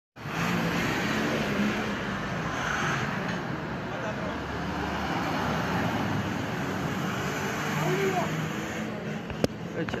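A military vehicle driving past, its engine noise steady, with people's voices mixed in; a single sharp crack near the end.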